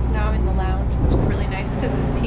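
A woman's voice in short bursts over a steady low rumble, which weakens a little after about a second.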